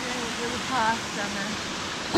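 Steady rushing of a small waterfall pouring into a creek pool.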